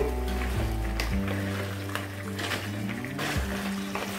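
Background music: soft held notes that shift in pitch a few times.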